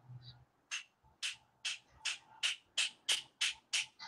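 Hands handling a wristwatch: a run of about nine short scratchy rasps, coming a little faster toward the end.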